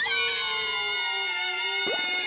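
A cartoon boy's long, held falling scream that rises in pitch at the start, with music under it. A quick falling swoop comes near the end.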